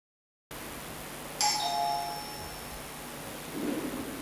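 A two-note ding-dong chime, a higher note followed at once by a lower one, rings out about a second and a half in and dies away over faint room sound.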